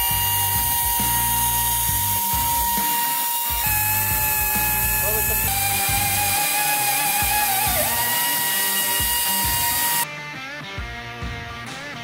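PROMOTECH PRO-50/2 ATEX pneumatic magnetic drill running and cutting through a steel pipe wall, a steady high whine whose pitch shifts a few times. Background music plays underneath. The whine drops away near the end, leaving quieter sound.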